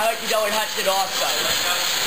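Indistinct voices talking over a steady background hiss.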